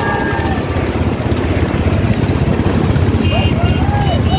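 Motorcycle engines running at speed with heavy wind noise on the microphone, and men shouting over them toward the end.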